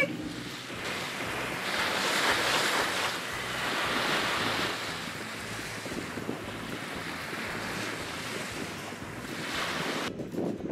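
Small surf washing onto a beach, with wind buffeting the microphone. A wave's wash swells for about three seconds near the start, then settles to a steady rush.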